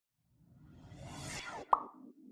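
Logo intro sound effect: a swelling whoosh builds for about a second, then a single sharp pop near the end, trailing off in a short low echo.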